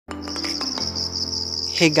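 Insects chirping in a continuous, finely pulsing high trill, over low sustained notes of background music.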